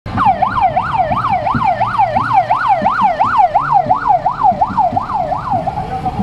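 Electronic vehicle siren in fast yelp mode, rising and falling about three times a second, stopping just before the end.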